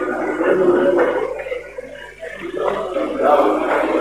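Indistinct talking in the background, with a short lull about two seconds in.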